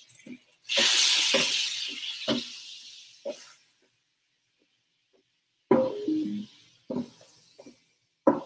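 Whiskey hitting a hot electric griddle's caramel sizzles loudly about a second in and dies away over a couple of seconds, with a metal spatula knocking and scraping on the griddle top.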